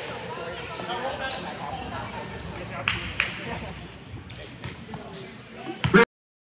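Volleyball struck during a rally in a large, echoing gym hall: a few sharp smacks of hands on the ball, the loudest just before the end, over players' and spectators' voices.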